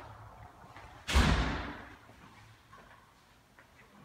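A single heavy thump about a second in, deep and sudden, fading away over about half a second.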